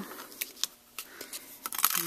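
A handful of light, scattered clicks and taps as a thin metal stitched die and a piece of cardstock are handled and lifted off a plastic cutting plate.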